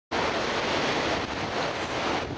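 Steady rushing noise of ocean surf breaking on a beach, with wind on the microphone.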